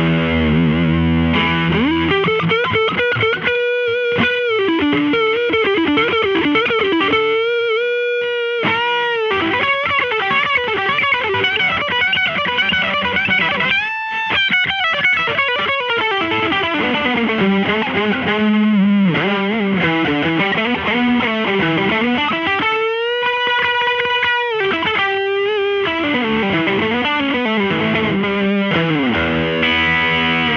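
Electric guitar (Bilt SS Zaftig) through a ProTone Essential Edition Dead Horse Overdrive pedal, its JRC4558-based overdrive turned all the way up, into a Supro Royal Reverb amp. It plays a heavily overdriven lead of single notes with bends and long held notes with vibrato, opening on a few chords.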